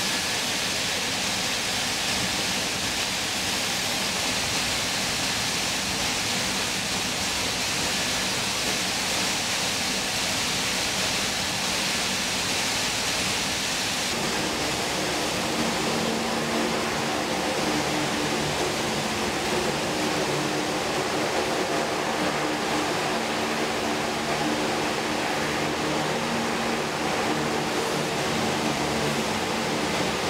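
Steady rushing noise of an LCAC hovercraft running over the sea: its shrouded fans, air cushion and spray. About halfway through, several steady low hums join in.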